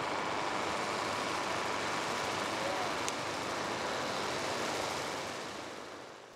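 Steady outdoor background noise with faint distant voices, fading out near the end.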